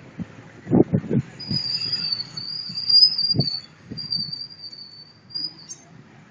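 A high, thin squealing tone, wavering slightly, begins about a second and a half in and lasts about four seconds before ending with a short flick. A few low thumps come before it and once in the middle.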